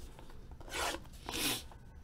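Two scraping swishes across the shrink-wrapped cardboard of a trading-card box as it is being opened, the second about half a second after the first.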